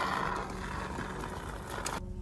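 Can of polyurethane expanding joint foam hissing as it is sprayed into the gap between insulation blocks and a concrete wall; the hiss fades out about half a second in, leaving a quieter even background noise.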